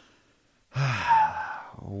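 A man's sigh: a near-silent pause, then one breathy exhale lasting about a second, just before he speaks again.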